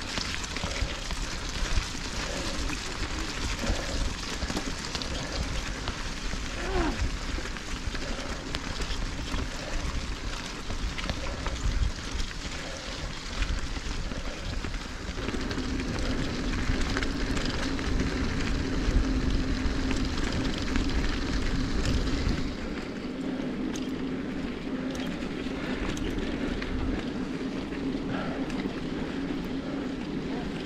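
Mountain bike rolling along a stony dirt track: continuous tyre crunch and rattle with rumble on the microphone, which eases about three-quarters of the way through. A steady low hum comes in about halfway and holds to the end.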